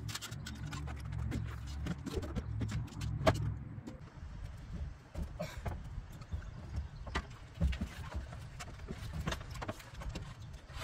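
Knocks and clatter of a folded fat-tyre Aventon Sinch e-bike being heaved up and set down in a pickup truck bed, with the sharpest knock about three seconds in and another near the end.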